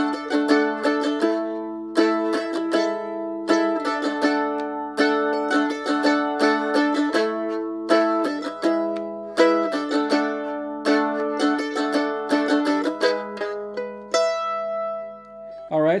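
An F-style mandolin playing a strummed chord pattern that moves D, A, E, with a picked line of moving notes over the chord changes. It ends on a chord left to ring and fade near the end.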